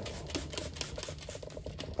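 Rotary carpet-cleaning floor machine running with its pad on carpet: a steady low motor hum under a fast, even ticking.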